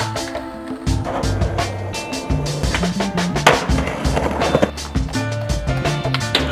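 Skateboard on concrete, wheels rolling and scraping with a few sharp board impacts, mixed under background music with a steady beat.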